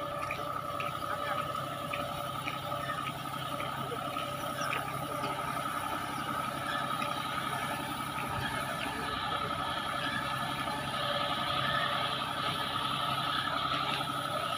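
Tractor engine running steadily under load as it pulls a nine-tine seed drill through tilled soil, with a steady high whine over the engine.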